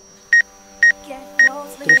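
DJI GO app obstacle-avoidance warning beeping for a DJI Mavic Pro: four short, high, evenly spaced beeps, about two a second. It is the proximity alert for foliage sensed about 2.5 m ahead of the drone.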